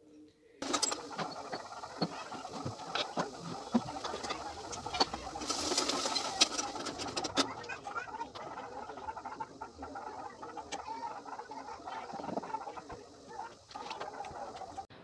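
Kitchen clatter of rotis being rolled out: a rolling pin clicking and knocking on a board, with other small utensil knocks. A brief hiss comes about five and a half seconds in.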